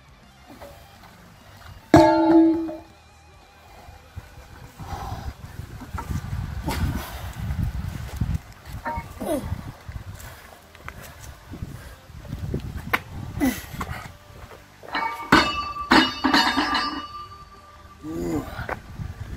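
A heavy weight plate drops onto pavement with a loud clang about two seconds in. Later a loaded barbell is dropped, with several hits and ringing metal near the end. Guitar music plays underneath.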